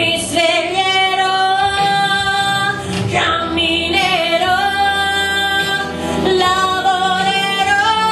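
A woman singing an Italian ballad into a microphone, holding long notes with a wavering vibrato.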